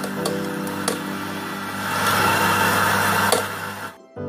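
Espresso machine running steadily with a mechanical hum and hiss as a shot pours, over quiet background music, with a few sharp clicks.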